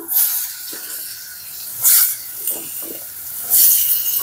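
Chopped round gourd (tinda) and potato pieces sizzling as they go into hot oil and roasted spices in a steel kadhai, with louder bursts of sizzle about two seconds in and near the end.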